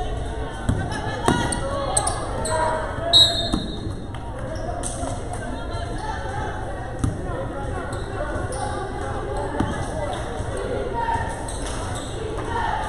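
Basketball game play in an echoing gym: scattered thuds of the ball bouncing on the floor, with a brief high sneaker squeak about three seconds in, over the chatter and calls of spectators and players.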